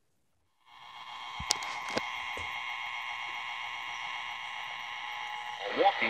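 Zenith Trans-Oceanic H500 tube shortwave radio coming on through its speaker: after a brief silence a steady whistling hiss fades up, with a few sharp crackles about a second and a half in. Near the end a broadcast voice comes through.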